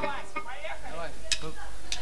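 Voices with a few evenly spaced sharp ticks from the drummer counting in, about every half second in the second half, just before the band starts the next song.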